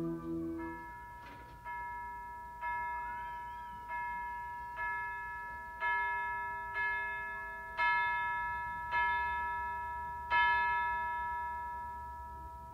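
Tubular bells (orchestral chimes) in a concert band, struck one note at a time about once a second. Each note rings on and fades as the next is struck, like a tolling bell.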